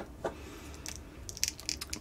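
Small plastic clicks and ticks as a swappable action-figure head is handled and pressed onto the figure's neck ball joint: a couple of faint single clicks, then a quick cluster of them in the second half.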